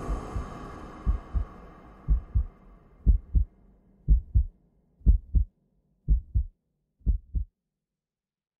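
Heartbeat sound effect: a steady lub-dub double thump about once a second, eight beats, stopping suddenly near the end. In the first few seconds the tail of the soundtrack music fades out underneath.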